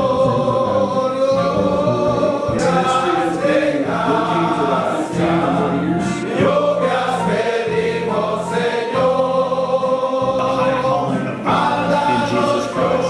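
A choir singing gospel music, several voices held on long notes together.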